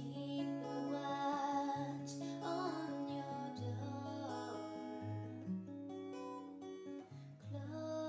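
Steel-string acoustic guitar played with a capo in a slow lullaby, its bass notes changing every second or so, with a woman singing the melody in the first half.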